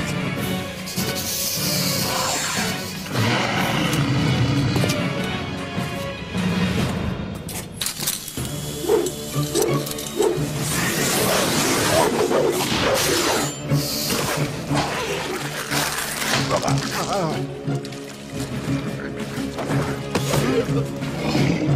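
Cartoon soundtrack music with action sound effects: crashes and impacts as a stone monster attacks.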